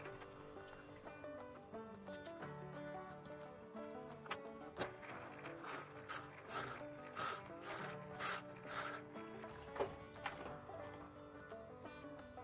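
Quiet instrumental background music.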